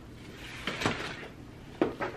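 Objects being handled and rummaged through in a cardboard box: soft rustling with a couple of light knocks, the sharpest near the end.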